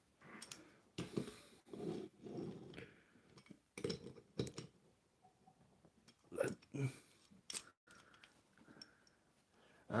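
Faint, scattered clicks and knocks of wooden toy engines being picked up, moved and set down by hand on wooden track and a cloth mat, with some light rubbing and handling noise.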